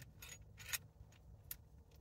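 A few light clicks and small scrapes from a tripod's phone-clamp mount being handled and adjusted, the clearest click just under a second in.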